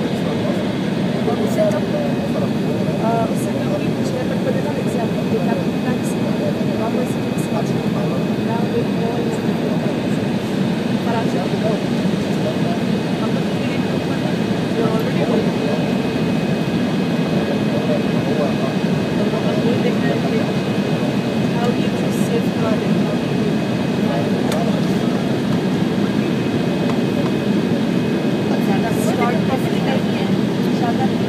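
Steady airliner cabin noise inside an Embraer 170 on approach: the General Electric CF34-8E turbofans and airflow make a constant low rush, with a faint steady high tone above it.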